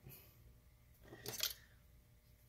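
A brief rustling scrape a little over a second in, from a small hand tool being handled on the desk, against quiet room tone.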